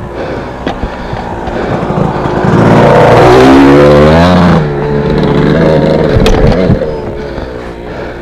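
Off-road dirt bike engine revving under the rider: it rises in pitch about two and a half seconds in, holds loud for about two seconds, drops off suddenly, then picks up again briefly near six seconds, with a few sharp knocks from the bike.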